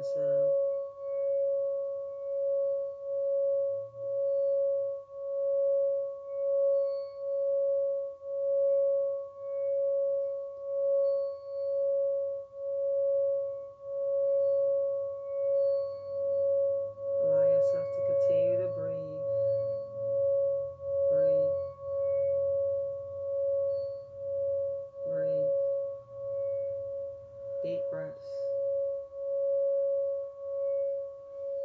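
Singing bowl sung by rubbing a wooden striker around its rim: one steady, sustained ringing tone with a fainter higher overtone, swelling and fading about once a second with each pass of the striker. A few brief clicks of the striker on the bowl come around the middle and near the end.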